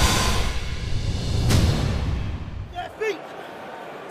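Broadcast title sting: music with a deep low rumble and a swoosh about one and a half seconds in, fading out about three quarters of the way through. A brief snatch of a man's voice follows near the end.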